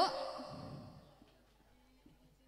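A man's voice through a PA system: his last word trails off and echoes away, followed by a breathy exhale into the microphone, then only faint background.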